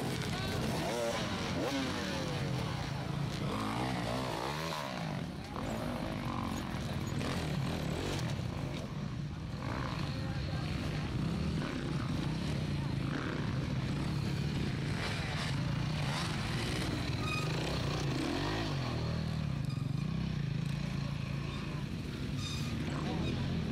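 Enduro motorcycle engines running and revving up and down in uneven bursts as the bikes climb over tyre and log obstacles, with spectators' voices mixed in.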